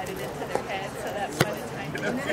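Indistinct voices of spectators chatting, with one sharp knock a little past the middle.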